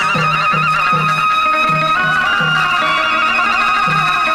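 Instrumental Vietnamese chầu văn ritual music: a reedy melody with quick trills that settles into held notes, over a low accompaniment note struck about twice a second.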